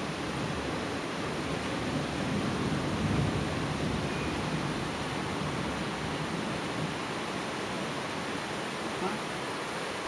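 A steady rushing noise, even throughout, with no distinct events.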